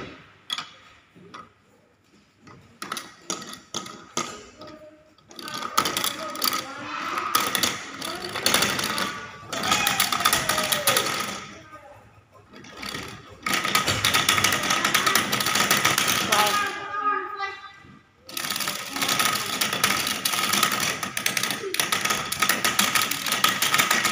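Rapid clicking and rattling of plastic gears as a child spins them by hand on a wall-mounted activity panel, louder and denser in the second half, with voices in the room.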